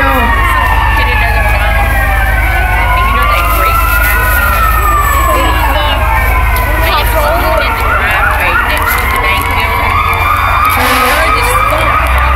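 Several emergency-vehicle sirens sounding at once in overlapping slow rising-and-falling wails. From about eight seconds in, one of them switches to a fast yelp.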